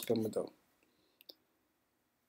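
The end of a man's spoken word, then near silence broken by two faint, quick clicks a little after a second in: keystroke and mouse clicks on a computer.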